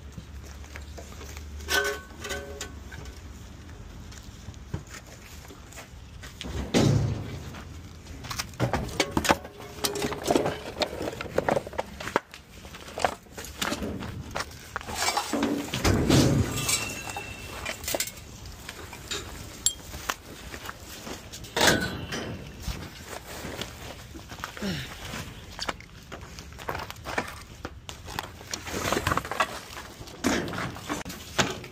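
Debris being cleared by hand: irregular knocks, thuds and clinks as wood scraps, plastic and trash are picked up and thrown onto a trailer, with rustling and footsteps on the littered ground.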